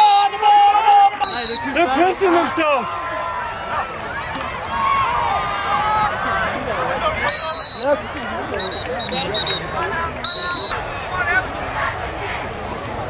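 Referee's whistle in short, shrill blasts, one just after the start and a run of several quick blasts from about seven to ten and a half seconds in, over crowd and sideline voices shouting and cheering.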